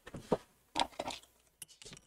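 A few short rustles and taps from hands handling a white cardboard product box and reaching for scissors, in three brief clusters.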